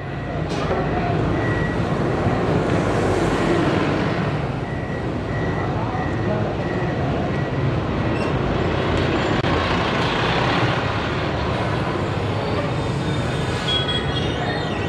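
City street traffic noise: a steady rumble and hiss of passing vehicles, fading in at the start, with indistinct voices mixed in.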